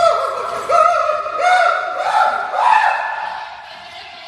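High-pitched singing: a run of held notes, each a step higher than the last, then dying away over the last second.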